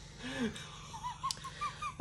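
Stifled, wheezy laughter held back behind a hand: a soft falling breath, then a run of short, high squeaks about four a second.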